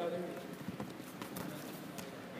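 Wrestlers' feet scuffing and knocking lightly and irregularly on a wrestling mat, under faint background voices in the gym.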